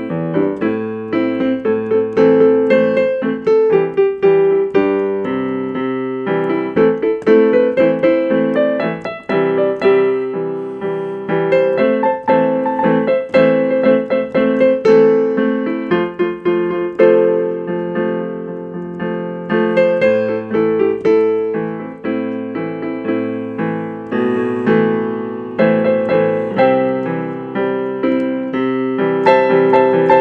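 Solo instrumental tune played on an electronic keyboard with a piano sound: a melody over chords in both hands, notes struck steadily throughout.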